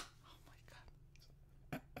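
Near silence with a man's faint, breathy suppressed laughter, ending in a short exclamation.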